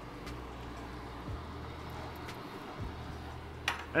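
Quiet kitchen sound: a low steady hum with a few faint clicks of spatulas against pans as risotto is stirred.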